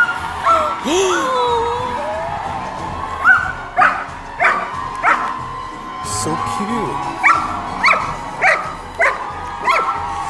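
A dog barking in two runs of short, evenly spaced barks, about three to four barks each, the first about three seconds in and the second near the end, over background music and distant voices.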